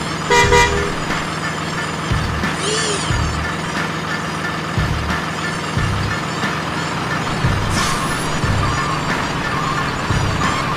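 A truck horn gives one short toot about half a second in, over a steady low rumble and background music.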